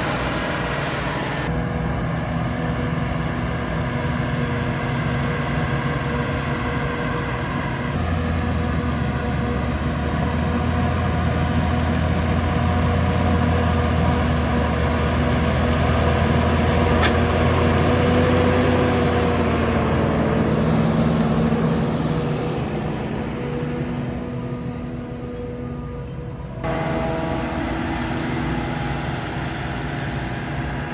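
A Claas Jaguar forage harvester and a tractor running together while the harvester chops maize for silage: a steady, loud engine drone with a low hum. The sound changes abruptly a few times where shots are cut, and the pitch sags slightly for a few seconds past the middle, as if under load.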